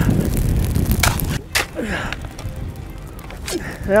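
Wind buffeting the microphone, with a few sharp knocks and scrapes of steel shovels beating out burning dry grass.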